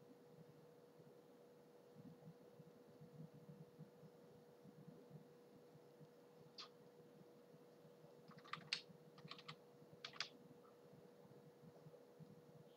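Faint computer keyboard key presses: a single click about halfway through, then a quick run of several clicks and two more a second later, over a faint steady electrical hum.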